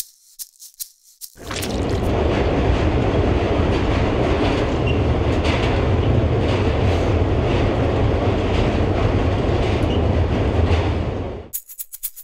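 Subway train running, heard from inside the car: a loud, steady rumble and rattle that comes in about a second in and stops shortly before the end. A few light shaker-like ticks come before it.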